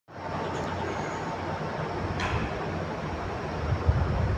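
Steady low rumble and hiss of background noise, with a sharp click about two seconds in and a low bump near the end.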